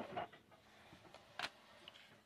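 Quiet table-top handling of baseball trading cards, with a few faint clicks and one sharper tick about two-thirds of the way through.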